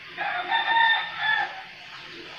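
A bird's call: one drawn-out, high-pitched call in a few connected swells, lasting about a second and a half, over a steady background hiss.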